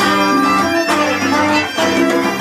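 A live band playing an instrumental piece: electric bass guitar, violin and hand percussion, with sustained melody notes and short accents about a second apart.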